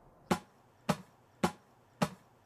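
Sharp percussive hits, evenly spaced at about two a second, part of a trailer's rhythmic sound track.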